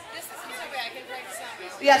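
Murmur of several people talking in a large hall, then a woman's voice starts near the end.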